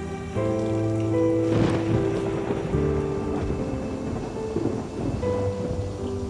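Sustained chords of a drama score, with a roll of thunder breaking in about a second and a half in and rumbling on beneath the music.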